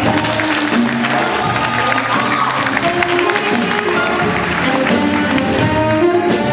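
Jazz band playing: horns over drums and cymbals, with a steady swing of notes throughout.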